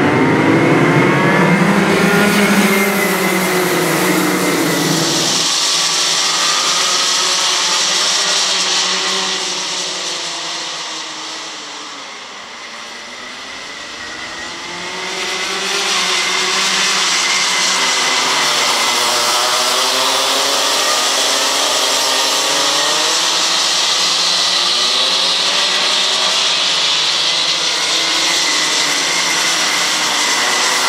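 A pack of Rotax Junior two-stroke kart engines at full throttle, with many overlapping engine notes rising and falling as the karts accelerate and brake. The pack is loudest as it pulls away from the start at the beginning, dips about twelve seconds in, and builds again as karts come through a corner.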